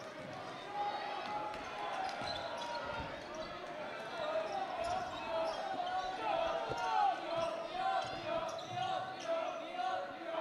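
A basketball being dribbled on a hardwood gym floor during live play, with sneakers squeaking as players cut and a steady murmur of crowd voices in the echoing gym.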